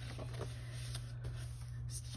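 Faint rustles and light clicks of paper notebook pages being turned by hand, over a steady low hum.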